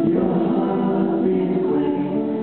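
Live folk-band performance: several voices singing together in harmony over acoustic guitars.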